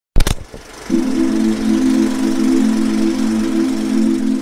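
Logo-intro sound design: a sharp burst of rapid clicks, then from about a second in a steady low droning chord with a hiss over it.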